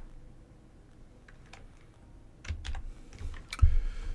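Keystrokes on a computer keyboard: a few faint scattered key presses, then a quick run of sharper ones in the second half, the loudest near the end.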